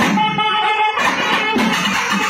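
Nadaswaram ensemble playing. For about the first second the pipes hold one long steady note alone. Then the thavil drums and the full ensemble come back in together.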